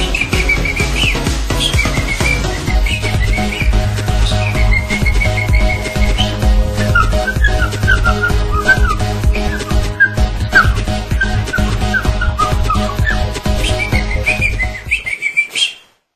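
Instrumental outro of a pop song: a steady beat and bass under a high whistling lead melody. The music fades out quickly near the end.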